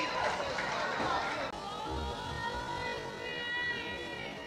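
Voices calling out on a football pitch, then background music comes in about a second and a half in.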